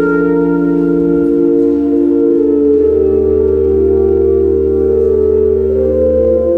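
Organ playing slow, held chords over a deep pedal bass note. The chord shifts a few times, and the bass drops out about a second in and comes back a little over a second later.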